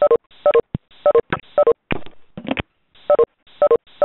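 Video-conference leave chimes: a short two-note tone repeated over and over, about twice a second, as participants drop off the call. A few clicks fill a pause of about a second in the middle.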